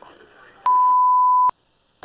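A single steady electronic beep, one pure tone lasting a little under a second, starting and stopping sharply.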